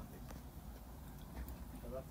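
Hardwood log fire in a clay fireplace crackling faintly, with a few scattered sharp pops over a low steady rumble.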